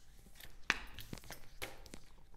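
Tarot cards being drawn from the deck and laid on a wooden tabletop: a few light clicks and taps, the sharpest about two-thirds of a second in.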